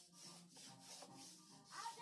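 Faint, quick scraping strokes of a small hand plane shaving the edge of a wooden strip, about three strokes a second.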